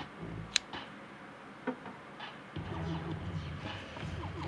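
A sharp metallic click about half a second in and a fainter click about a second later, from the blade lock of a Spyderco Pollywog folding knife being worked by hand. A faint low hum comes in about halfway through.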